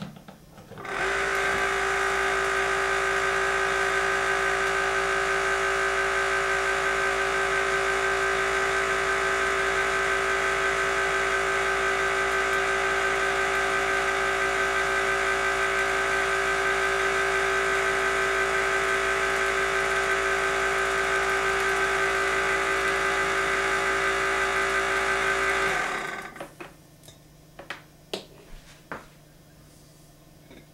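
Van de Graaff generator's electric motor and belt running with a steady whine, switched on about a second in and shut off near the end, winding down over about a second. A few light clicks follow as the wig on the dome is handled.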